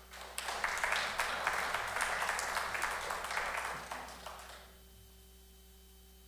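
Audience applauding, starting about half a second in and dying away after about four and a half seconds.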